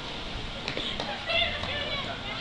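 Faint, distant raised voices, with a few light clicks.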